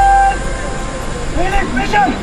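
A held musical note stops shortly after the start; about a second and a half in, a drawn-out shouted drill command rings out.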